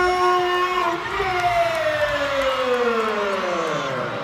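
A single loud pitched tone, held steady for about a second, then sliding slowly and smoothly down in pitch for about three seconds until it fades low.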